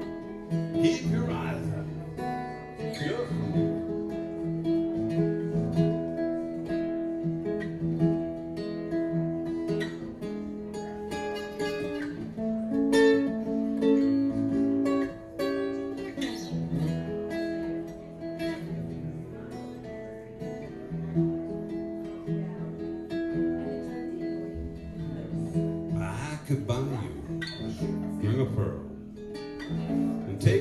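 Steel-string acoustic guitar strummed and picked through an instrumental passage of a song, its chords ringing out.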